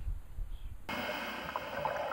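Faint low rumble, then about a second in a steady hiss with a faint whine sets in abruptly: the soundtrack of underwater camcorder footage.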